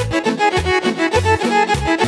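Instrumental intro of a Serbian folk band, with a lead melody over accordion and a steady bass beat about twice a second.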